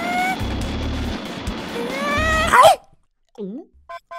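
Cartoon sound design: upbeat backing music under a jetpack boost effect, a whine that rises in pitch for about a second and cuts off sharply at its loudest. After a short silence comes a brief animal-like vocal that dips and rises in pitch.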